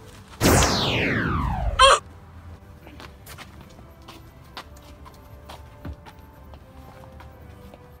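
A loud sound effect that glides steadily downward in pitch for about a second and a half, ending in a short warbling zap. Then only faint scattered ticks.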